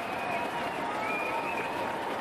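Stadium crowd noise at a cricket match: a steady din from a large crowd, with a few higher drawn-out voices rising above it.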